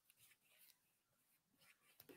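Faint paintbrush strokes on a canvas, a few short soft brushings with quiet in between.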